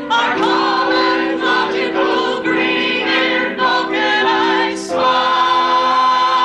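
Several amateur stage performers singing together in chorus, moving through short notes before settling on one long held note with vibrato about five seconds in.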